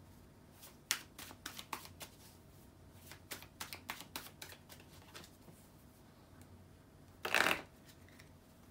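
A tarot deck being shuffled by hand: a run of short card slaps and flicks for the first five seconds, then a pause and one short, louder riffle near the end.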